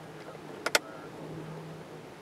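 Two sharp clicks in quick succession a little past the middle, over a faint low steady hum.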